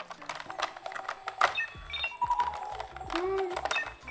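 Electronic sound effects from a toy Batmobile's small speaker: short beeps and tones, with a low rumble starting a little under two seconds in, plus sharp clicks as the toy is handled.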